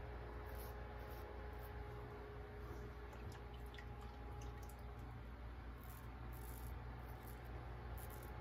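Faint short scrapes of a Blackland Dart double-edge safety razor cutting lathered stubble on the neck, a series of quick strokes, over a steady low electrical hum.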